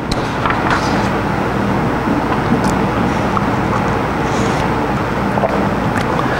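Audience applauding, a steady dense clapping that stops abruptly.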